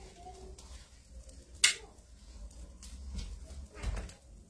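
Flames burning on a towel spread over a patient's back in fire-towel therapy, a soft low rumble. One sharp click comes a little over a second and a half in, and a duller thump near the end.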